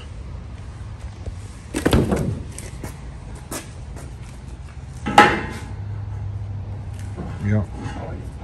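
Plastic clicks and knocks from handling a Milwaukee M12 undercarriage light, its hinged arms being flipped and pivoted, with a knock about two seconds in and a sharp, loud clack about five seconds in as the light is set against the steel trailer ladder by its magnet.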